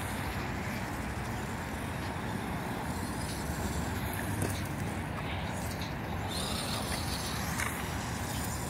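Steady low rumble of distant road traffic outdoors, even throughout.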